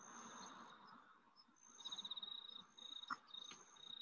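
Faint, high-pitched chirps and a short rapid trill, outdoor wildlife calls, over a faint hiss.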